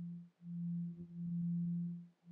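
Background meditation drone: a single steady low pure tone that drops out briefly about a third of a second in and again right at the end.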